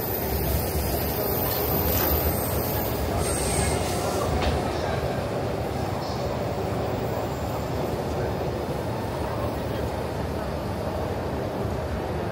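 A train running on rails: a steady low rumble with a high wheel squeal that fades out about three seconds in.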